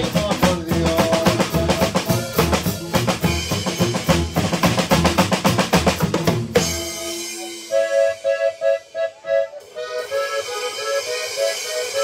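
A live norteño band plays a zapateado: a drum kit with busy snare and bass-drum strokes over a heavy bass line. A little over halfway through, the drums and bass drop out, leaving a lone melody line of quick, repeated notes.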